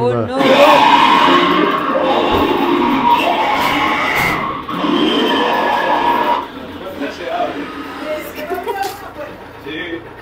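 Loud recorded horror sound effect from an animatronic zombie prop in a locker: a distorted, wordless voice with music, lasting about six seconds before it drops away.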